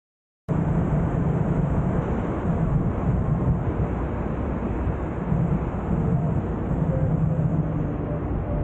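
Steady rush of wind and road noise from a moving ride, cutting in suddenly about half a second in after silence.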